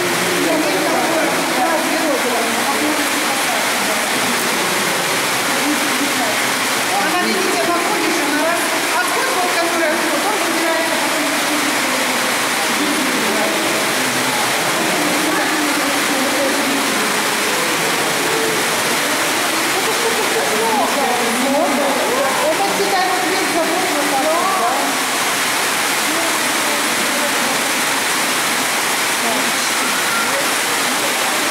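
Water running steadily through a concrete fish-rearing tank at a salmon hatchery, with indistinct voices talking over it throughout.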